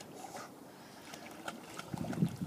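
Faint light splashing of water from dogs paddling as they swim, with a few small splashes in the second second.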